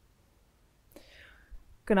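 A pause in a talk: near silence, then a faint, short breath-like hiss about a second in, and a woman starts speaking at the very end.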